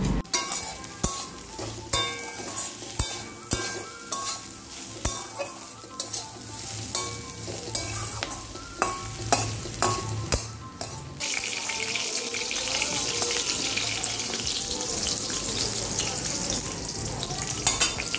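Metal spatula scraping and clicking against a metal kadai as carrot and green bean strips are stir-fried, with a light sizzle under it. From about eleven seconds in, a steady, louder hissing sizzle of eggplant slices shallow-frying in oil takes over.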